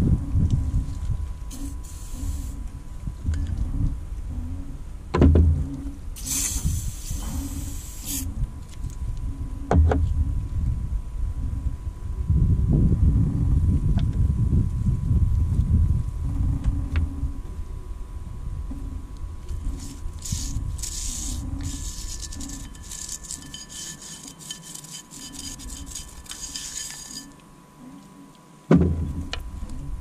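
Gloved hands handling and wiping greasy winch parts on a plastic-covered work surface: rubbing and rustling with the odd sharp click of metal parts. About six seconds in, a two-second hiss of aerosol spray.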